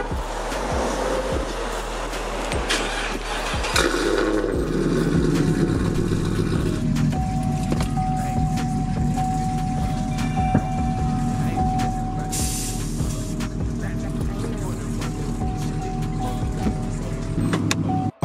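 Chevrolet Camaro SS 6.2-litre V8 starting about four seconds in, then idling steadily, with background music over it.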